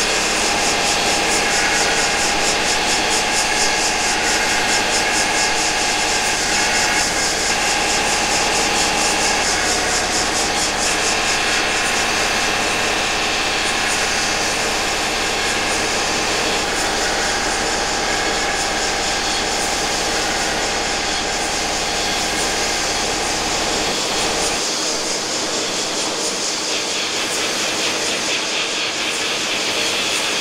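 Experimental electronic music: a dense, steady wall of harsh noise and held droning tones. About 24 seconds in the deep bass drops out and the texture thins.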